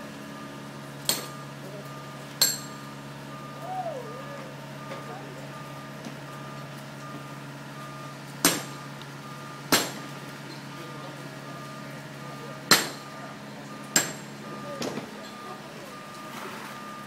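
A mason's hammer striking a chisel against a block of building stone, dressing the rough quarried face into a rock face. There are six sharp strikes, in three pairs about a second apart, each with a brief ring.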